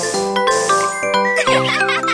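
Bright chiming dings of a cartoon mobile game's sound effects over cheerful background music, with a flurry of quick rising and falling whistle-like tones in the second half.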